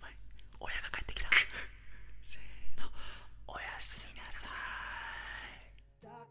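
Two men whispering to each other close to an ASMR microphone, in breathy bursts with short pauses.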